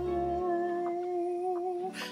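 A voice humming one long held note at a steady pitch, with a slight waver; the music's bass beat drops out about half a second in and the note ends just before the end.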